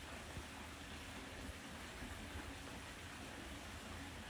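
Faint, steady background hiss with a light low rumble, with no distinct sound events: outdoor microphone noise.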